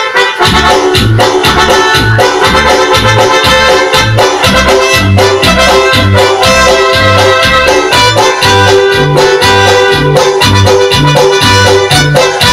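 Live arranger-keyboard music: a melody line over a steady auto-accompaniment of bass and drums pulsing about twice a second, with no singing.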